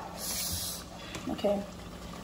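Tomato sauce sizzling and bubbling in a pot on an electric stove as it is stirred with a spatula, with a short hiss in the first second.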